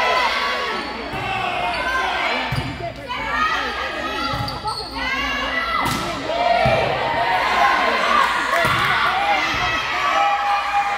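Volleyball rally in a gym: the ball being struck and smacking the court, with a sharp hit about six seconds in, under constant shouting and calling from players and spectators that echoes in the hall.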